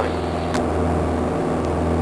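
Steady cabin drone of a Beechcraft Sundowner's four-cylinder Lycoming engine and propeller in the climb, a low even hum, with a short click about half a second in.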